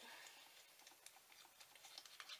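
Near silence: faint room tone with a few light, scattered clicks.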